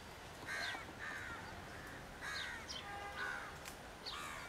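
Birds calling outdoors: a series of about five short calls, one after another, over faint background noise.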